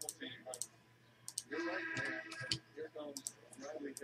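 A few scattered clicks from a computer mouse and keyboard, some in quick pairs, as a randomizer program is set up.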